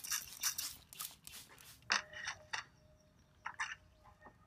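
Trigger spray bottle squirting water onto compost in several quick hissing bursts, then one sharp knock about halfway through, followed by a few brief rustles.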